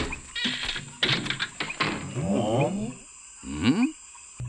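Anime soundtrack: a few sharp thunks of an axe hacking into a tree, followed by a character's pitched, voice-like cries that rise near the end.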